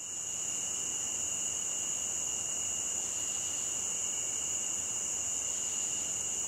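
Steady, high-pitched chorus of night insects, an unbroken shrill drone that fades in at the start.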